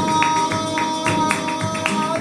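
Live flamenco: a male cantaor holds one long sung note over flamenco guitar, with sharp hand claps (palmas) keeping a steady beat about three times a second.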